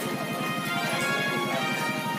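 Background music with a fast, steady clip-clop-like beat under sustained melodic lines.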